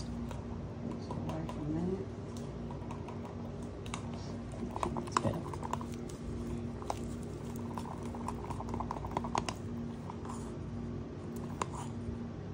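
Light, irregular clicks and taps of a wooden stir stick and thin plastic mixing cups being handled while resin colour is mixed, over a steady low hum.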